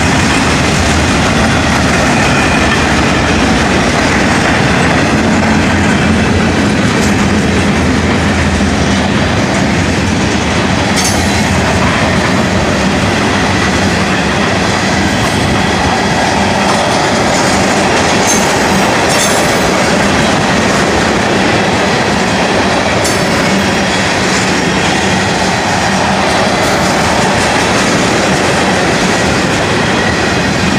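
Freight train's boxcars and tank cars rolling past close by: a loud, steady noise of steel wheels running on the rails, with a few sharp clicks along the way.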